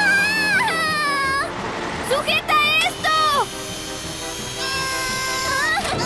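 Animated characters' voices making drawn-out wordless cries, with the pitch sliding up and down in several long calls. Background music plays under them.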